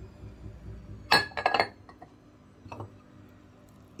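A utensil or dish clinking against the salad bowl while chopped egg is added: a quick cluster of ringing clinks about a second in, then a fainter one a second later.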